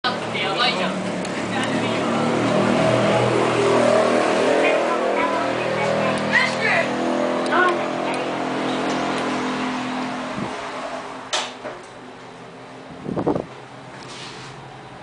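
Road traffic with the steady drone of a vehicle engine, and voices, fading out about ten seconds in; then a couple of sharp clicks and a short tone near the end.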